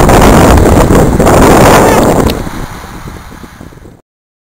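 Loud wind buffeting on the microphone outdoors. It drops off sharply about two seconds in and fades out near the end.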